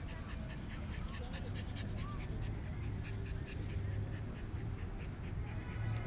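A Norfolk terrier panting in quick, even breaths, several a second, over a low steady rumble.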